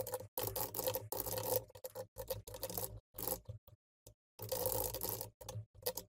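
Computer keyboard typing in irregular bursts with short gaps between them.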